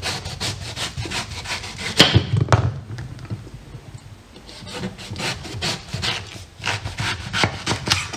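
A chef's knife slicing through the rind and flesh of a whole watermelon on a wooden chopping board: a rapid crackle of short crunching strokes in two bouts, with a quieter pause between. A couple of sharp knocks come about two seconds in.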